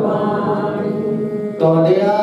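A Sikh congregation chanting in unison, a steady sung line of many voices, with a louder new phrase beginning about one and a half seconds in.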